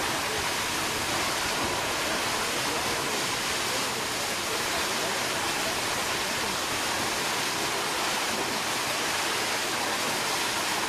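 Water discharge from the Tsūjun Bridge stone arch aqueduct: massive jets of water blasting out of the bridge's side outlets and crashing down into the gorge below. The rushing is loud and steady throughout.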